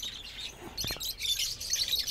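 Budgerigars chirping in quick, high-pitched bursts that grow busier in the second half. A light knock comes just before the chirping.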